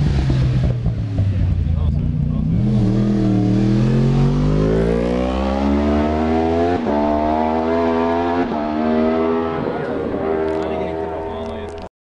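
Isle of Man TT race motorcycles at racing speed through a bend. One bike goes past hard at the start, then another's engine note climbs steadily as it accelerates. The note is cut twice by sharp breaks, typical of quick upshifts, and then holds high as the bike pulls away.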